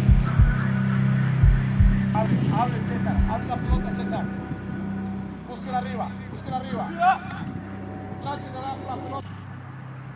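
Distant shouting voices of players and coach on a soccer training pitch, short indistinct calls over a steady low hum, with a few low thumps in the first few seconds.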